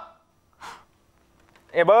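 A short breathy puff, then near the end a man's voice crying out with a steeply rising pitch, like a pained gasp.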